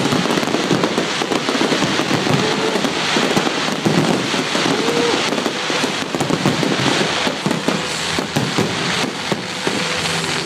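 Aerial fireworks in a dense barrage: many shells bursting at once, heard as a continuous run of rapid, overlapping pops and bangs.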